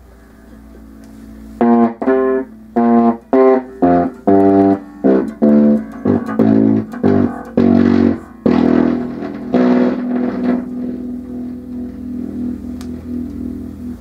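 Ibanez Mikro 28.6-inch-scale electric bass played with neck and bridge pickups blended: after a quiet first couple of seconds, a run of about a dozen plucked notes, then a last note left ringing and fading. A little fret buzz, a rattling fuzziness mostly on the heaviest string, on a bass not yet set up whose action is probably a hair low.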